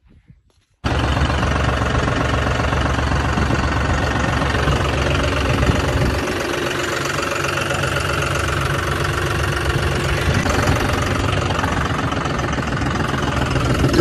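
John Deere tractor's three-cylinder diesel engine running steadily, loud and close from the driver's seat. It cuts in abruptly about a second in.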